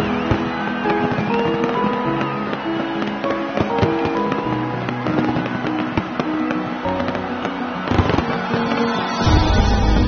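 Fireworks going off in many sharp bangs and crackles under music with held melodic notes. A deep bass line enters near the end.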